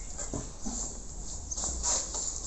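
A dog barking briefly a few times.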